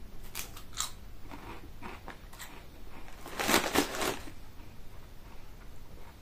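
Crunching of a ridged potato crisp being bitten and chewed, with a few sharp crunches near the start and a louder burst of crunching about three and a half seconds in.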